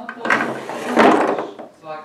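Small wooden toy furniture scraped and knocked against the floors of a wooden dollhouse, with two loud scraping bursts, about a third of a second and a second in.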